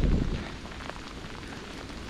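Steady hiss of rain and bicycle tyres on a wet path while riding, with a louder low rumble in the first moment.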